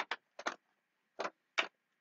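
Clear plastic compartment storage case being handled and closed, giving about five light, separate clicks and taps.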